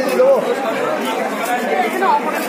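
Crowd chatter in a busy market: many voices talking at once, overlapping, with no single voice standing out.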